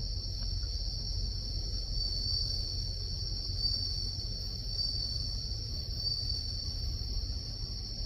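Night insects chirring steadily in one continuous high-pitched drone that swells slightly now and then, over a low steady rumble.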